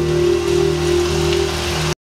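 The music ends on a long held chord while audience applause rises over it, then the sound cuts off abruptly just before the end.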